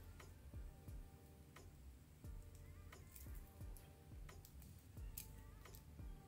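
Faint, irregular clicks of 8 mm pearl beads knocking together as they are threaded on fishing line, roughly one every second.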